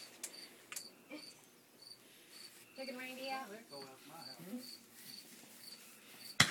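A cricket chirping at an even pace, about two chirps a second. A few faint sharp firework pops sound in the first second or so.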